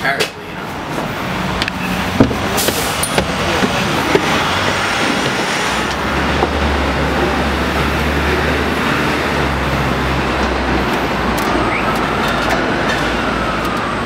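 Double-decker sightseeing bus running through city traffic, heard from on board as a steady hiss of road and traffic noise with a low engine hum that is strongest in the middle. Near the end a faint whine rises and then falls.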